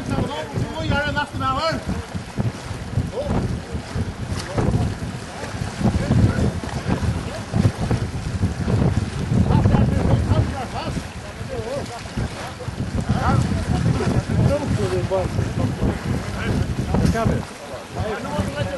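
Wind buffeting the microphone over open water in a gusting low rumble, with voices calling out now and then.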